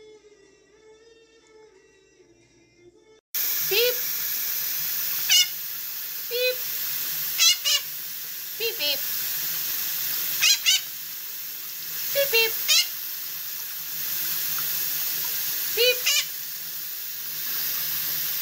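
Quaker parrot giving about a dozen short, sharp, high-pitched calls at irregular intervals, some in quick pairs and triplets. They sit over a steady rushing noise with a low hum, which starts suddenly a few seconds in after a faint, quiet opening.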